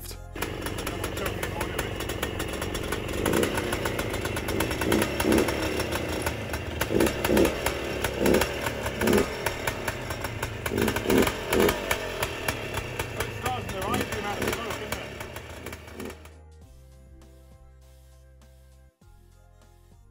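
Bultaco Alpina's single-cylinder two-stroke engine running, without the scraping from the broken chain tensioner, which has now been replaced. The engine sound cuts off suddenly about sixteen seconds in, leaving faint music.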